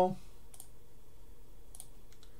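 Two computer mouse clicks, about a second apart, over a faint steady background hum.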